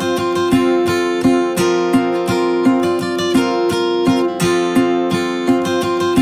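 Background music: an acoustic guitar strummed and plucked in a steady rhythm.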